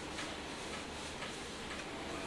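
Quiet handling as a cloth wipes leftover oil off a steel golok blade, with a few faint ticks.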